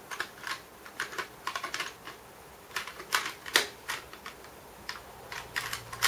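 Steel and brass bolts, nuts and threaded rods clinking against each other and the sides of a sheet-metal tin as a hand rummages through them. The clicks and rattles are light and irregular, spread through the whole stretch.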